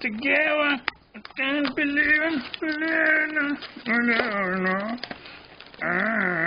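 A voice making wordless sing-song sounds: a string of drawn-out notes, some held on one pitch and some sliding up and down, with short breaks between them.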